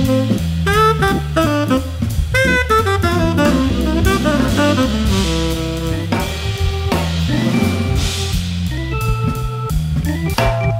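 Jazz trio playing a swing tune: a saxophone solos in quick, bending phrases over an organ bass line and a drum kit. In the second half the lines turn to steadier held notes under a wash of cymbals.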